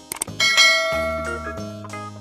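Background keyboard music with a subscribe-button sound effect laid over it: a couple of quick clicks, then a bright bell chime about half a second in that rings on and slowly fades.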